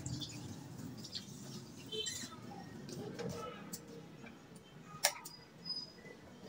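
Faint ticking and popping of a fish, tomato and egg sauce simmering in a pan on a gas burner, with one sharp click about five seconds in.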